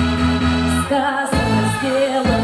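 Female vocal group singing to a pop backing track; the voices come in over the accompaniment about a second in.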